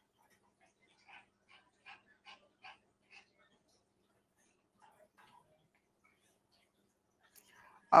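Faint clicking at a computer: about six soft clicks a little under half a second apart, then a few fainter ones a while later. A woman's voice starts at the very end.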